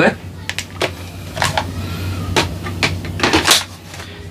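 Irregular clicks, knocks and rustles of the Milwaukee M18 vacuum's plastic housing and a thin cloth sleeve being handled and fitted; the vacuum motor is not running.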